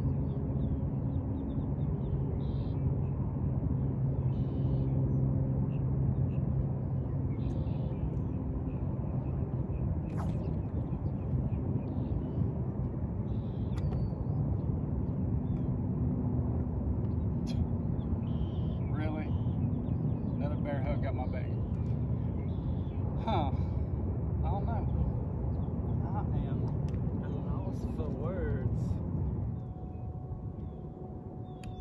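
A steady low mechanical rumble with a droning hum, strongest in the first few seconds. Faint higher chirps come in during the second half. The rumble drops away abruptly just before the end.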